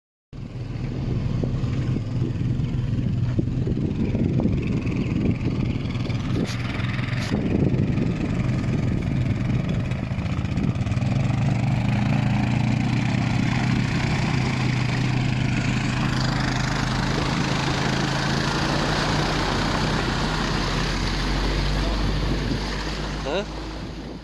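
A small engine running at a steady speed while under way, with a rushing noise of wind or water over it; the engine note shifts slightly about two-thirds of the way through and briefly rises near the end.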